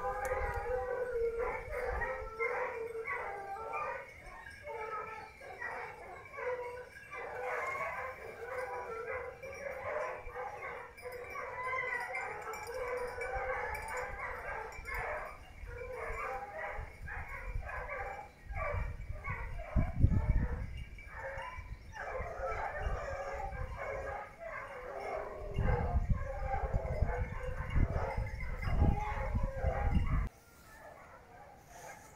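A pack of hunting dogs giving tongue in a continuous chorus of baying on the trail of wild boar. A low rumble on the microphone comes twice, about two-thirds of the way through and again near the end.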